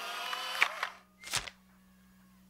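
Cartoon instant-camera sound effects: a few short clicks, the loudest about a second and a half in, as the photo print comes out.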